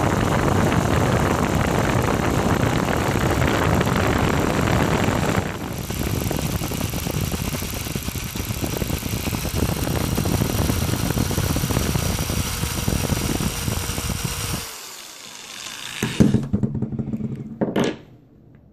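Cordless drill running steadily, spinning a twisted wire drawn against a hand-held tapered steel tool to flatten it into interlock wire. The sound changes about five seconds in and stops about fifteen seconds in, followed by a couple of short bursts near the end.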